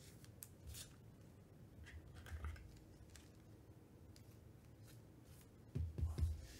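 Faint plastic scraping and light clicks of a trading card being slid into a hard plastic card holder, with a soft thump near the end.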